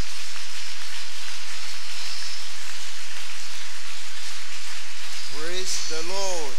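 A large congregation clapping hands in sustained applause, a dense even patter. A man's voice comes back in over the clapping near the end.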